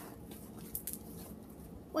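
Hands kneading and squishing slime with toilet paper mixed in, making faint scattered wet clicks. A voice starts at the very end.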